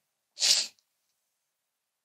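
A single short, hissy burst of breath from a person at the microphone, about half a second in.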